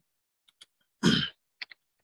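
A man clears his throat once, a short burst about a second in, with a few faint clicks before and after it.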